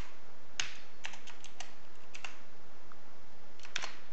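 Computer keyboard typing: scattered key clicks in short clusters, a few at a time, over a steady background hiss.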